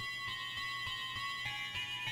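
A musical doorbell starts abruptly and plays a long electronic melody of sustained chime notes stepping from one pitch to the next, over a soft low beat about three times a second.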